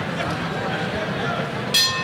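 Murmur of a seated crowd talking, then near the end one short, bright ring of the boxing ring's bell, sounding the start of the next round.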